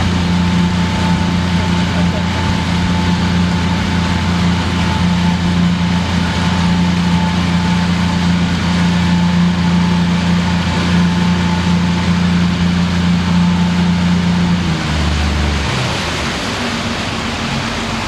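Boat engine running steadily at cruising speed, with the rush of the wake and wind over it. About fifteen seconds in the engine note drops and shifts lower.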